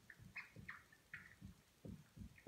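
Dry-erase marker writing on a whiteboard: a run of faint, short squeaky strokes.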